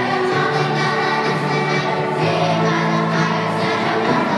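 Children's choir singing with musical accompaniment, in steady held notes with no pauses.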